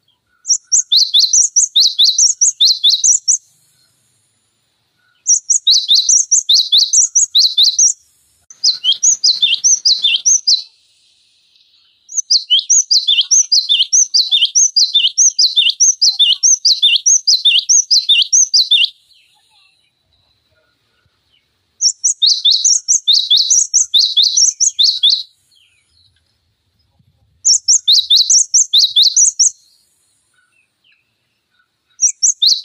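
Cinereous tit (gelatik batu) singing sharp, rapidly repeated high notes in bursts. There are six bursts, each two to seven seconds long, with short pauses between them.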